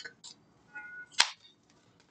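A deck of tarot cards being handled and shuffled: a few soft card clicks, then one sharp snap of the cards just over a second in.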